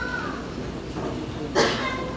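A small child's high-pitched vocalizing: a short falling cry at the start, then a louder cry about one and a half seconds in.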